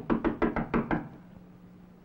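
A quick run of about six or seven sharp wooden knocks in the first second, fading away.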